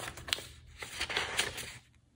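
Paper rustling and brushing as hands handle the pages of an open sketchbook, a run of short scrapes and crinkles that die away near the end.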